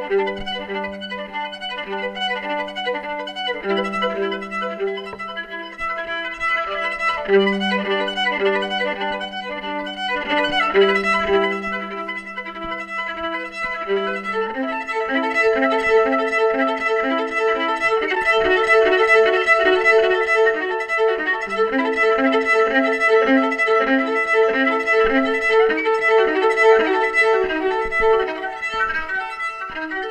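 Violin playing a fast melody of many quick notes, starting suddenly, over a live band with a double bass. About halfway through, the low held notes drop away and the violin rapidly repeats a higher note.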